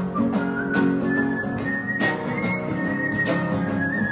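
Song with strummed acoustic guitar and a whistled melody above it: a single high, pure tone sliding between held notes.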